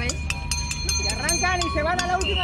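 People's voices at a running track, with a quick run of sharp clicks and a steady high-pitched tone through the first second or so.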